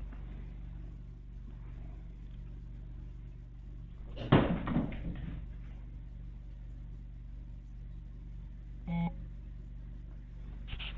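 A loud handling thump and rustle about four seconds in as a handheld camera is set down on the floor, over a steady low hum. Near the end comes one brief pitched squeak.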